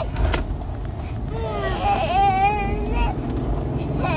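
Steady low rumble of a car interior, with a child's voice gliding up and down through the middle and a short click just after the start.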